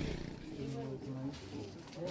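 Indistinct voices of people talking in the background, no words clear.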